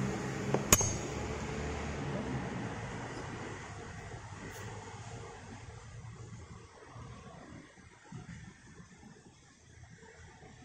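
A single sharp clink about a second in, over a steady low hum that fades away over the next few seconds, then a few faint soft knocks.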